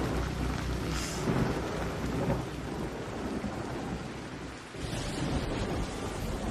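Steady rain falling with low thunder rumbling underneath, easing briefly about four and a half seconds in before coming back.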